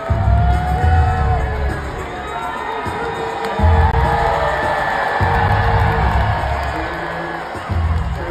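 Wrestlers' entrance music blaring over an arena PA with a heavy bass beat that drops out briefly about three seconds in and again near the end, under a large crowd cheering and whooping.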